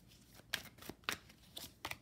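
Oracle cards being handled and shuffled by hand, giving a handful of short, sharp card clicks and snaps.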